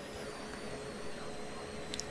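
Faint steady hiss with a thin, steady hum running underneath, like a small fan or bench equipment running, and one light click near the end.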